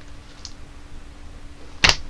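A pause in the talk: low room tone with a faint steady hum, then one sharp click near the end.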